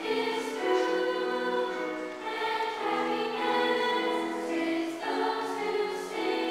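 Children's choir singing, with long held notes that change pitch every second or so.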